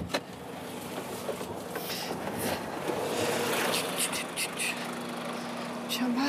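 Heavy truck's diesel engine idling steadily with a constant low hum, with some brief lighter higher sounds over it in the middle.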